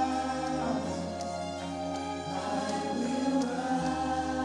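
Church choir singing a gospel song in long, held chords, with a lead singer on a microphone.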